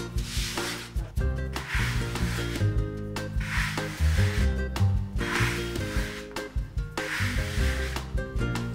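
A palm rubbing small pieces of soft chestnut-flour dough across a floured wooden board, rolling and dragging each into a trofie curl. The dry rubbing strokes repeat about once a second over background music.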